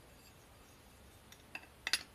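Aluminium tent pole sections clicking together as one is pushed into another's metal ferrule joint: a faint tick about a second and a half in, then a quick double metallic click near the end.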